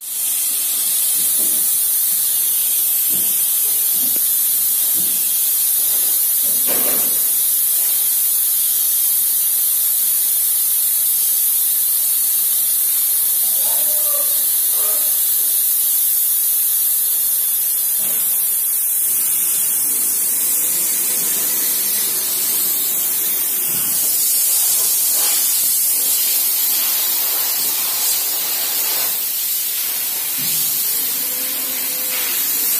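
Compressed-air paint sprayer hissing steadily as paint is sprayed: a loud, high hiss that comes on suddenly and hardly varies.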